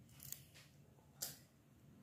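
Two faint, short, crisp snaps from fern shoots being handled by hand, the second a little louder, over near silence.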